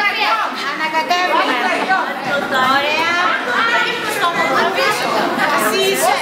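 Several people talking at once, voices overlapping in a busy room.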